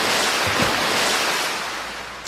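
A splash of muddy water drenching a person: a loud rushing hiss that sets in just before and slowly fades away over about two seconds.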